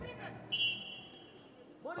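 A referee's whistle sounds one short, sharp blast about half a second in to restart the bout. Its steady high tone fades over about a second.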